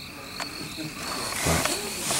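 Crickets chirping steadily in the background. A single click comes about half a second in, and a louder burst of noise with a short low, voice-like sound comes about a second and a half in.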